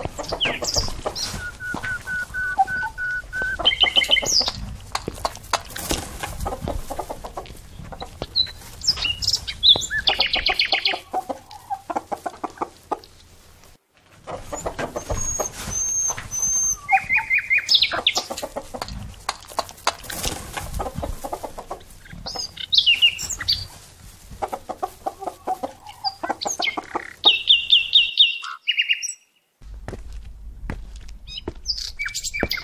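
Chickens clucking, mixed with high chirps, in rapid runs of short calls. The sound drops out briefly about halfway through and again just before the end.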